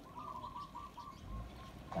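A bird calling: a quick string of about ten short notes on one pitch, falling slightly over a second and a half.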